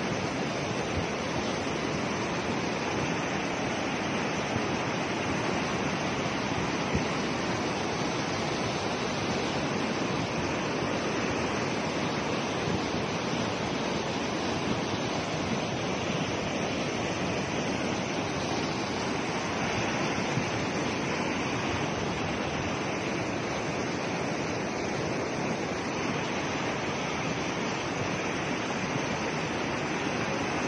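A river in flood: a steady, unbroken rush of fast, muddy floodwater.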